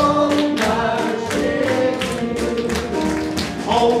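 Live ensemble music: several voices singing together over a band, with a steady percussive beat.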